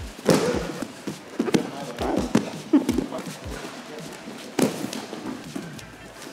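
Bare feet stamping and thudding irregularly on foam grappling mats as two wrestlers scramble from a standing clinch. Short bits of voice come between the thuds.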